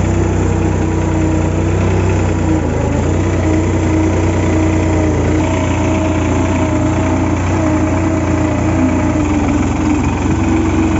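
New Holland 3630 TX Super tractor's three-cylinder diesel engine running steadily while the tractor drags a back blade to level soil, with a thin wavering whine above the engine drone.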